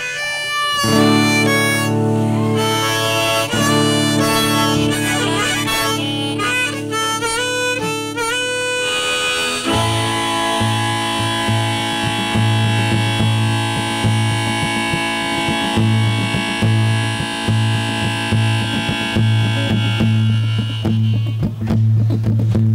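Instrumental intro on harmonica and strummed acoustic guitar: held harmonica notes step through a melody, and from about ten seconds in, steady rhythmic strumming carries under sustained harmonica chords.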